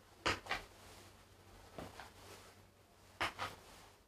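Sneakers stepping and pivoting on a wooden parquet floor: three pairs of short, soft knocks about a second and a half apart, as the kicking foot is lifted and set back down.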